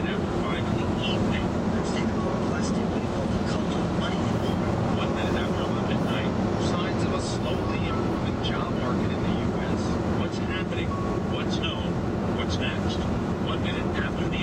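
Steady tyre and road noise heard inside the cabin of a 2011 VW Tiguan SEL cruising at highway speed on 18-inch wheels with low-profile 50-series tyres. It is an even rumble and hiss that holds at one level throughout.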